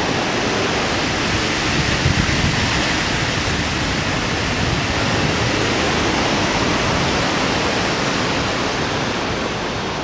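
Steady rush of wind buffeting the action camera's microphone in flight at around 60 km/h, with no engine tone heard, easing slightly near the end as the paraglider slows to land.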